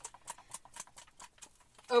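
A box of random draw selections being shaken, its contents rattling as a quick, irregular run of light clicks that thins out near the end.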